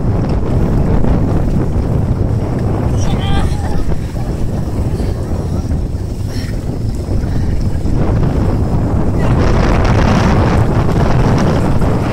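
Wind buffeting the microphone on an open boat at sea, a steady low rumble that grows fuller and louder about two-thirds of the way through.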